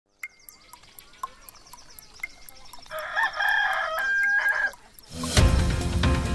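A clock ticking about four times a second, with a stronger tick each second, counting down to the hour. A rooster crows for about two seconds, and loud theme music starts about five seconds in.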